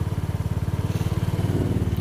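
Small single-cylinder four-stroke engine of a 2021 Lance Cabo 125cc scooter idling steadily with an even, fast pulse.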